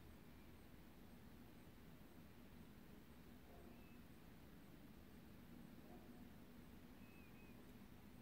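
Near silence: faint room tone with a steady low hum and a couple of very faint, short high chirps.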